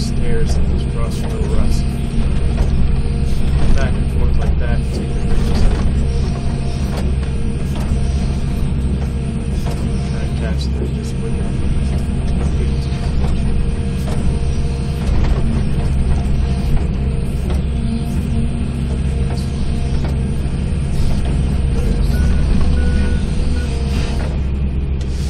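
Excavator's diesel engine running steadily under load with its hydraulics working, heard from inside the cab. Scattered knocks and scrapes of the bucket digging frozen dirt and stones come through, most in the first few seconds.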